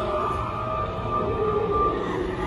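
Eerie siren-like drone: a steady high tone held throughout, with lower tones wavering beneath it, over a low rumble.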